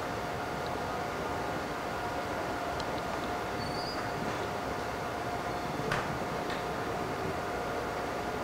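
Steady mechanical hum and hiss with a constant whine running under it, and a faint click about six seconds in.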